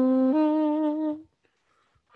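Saxophone playing a held melody note that drops briefly to a lower note and back up, then stops a little past one second in, leaving a short pause before the next phrase.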